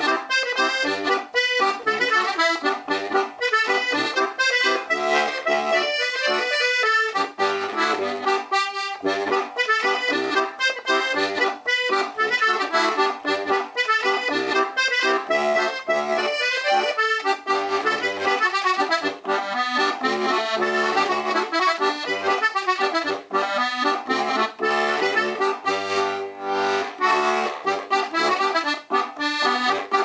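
Strasser Classic Steirische three-row diatonic button accordion, three middle reeds per note, played as a tune: melody and chords on the treble buttons over short, deep Helikon bass notes that come in and out.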